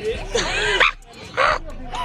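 A teenager laughing and squealing in two short, high-pitched bursts, the second about a second after the first.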